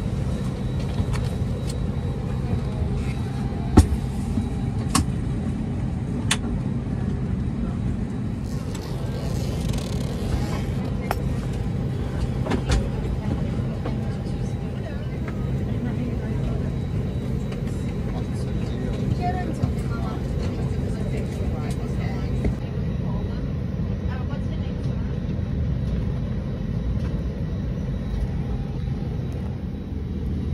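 Airliner cabin noise: a steady low hum, with a few sharp clicks between about four and six seconds in, the first of them the loudest sound.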